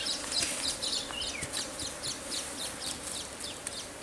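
Birds chirping in quick, repeated down-slurred notes, over a faint steady buzz.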